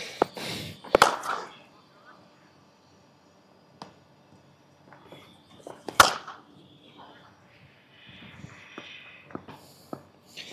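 Cricket bat striking the ball in the nets: a sharp crack about a second in and a louder one about six seconds in, with a smaller knock between. Low voices and breathing come and go around the hits.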